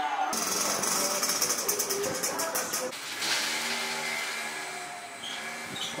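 Street ambience: people's voices mixed with a motor vehicle's engine running.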